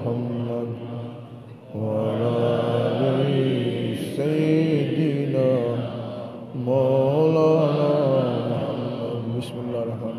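A man's voice, amplified, chanting salawat (blessings on the Prophet Muhammad) in long, held, wavering melodic phrases. There are four phrases, with short pauses for breath between them.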